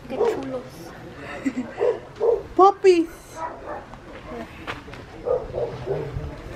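Small dogs barking and yipping in short bursts, the two loudest sharp yips coming close together about two and a half seconds in.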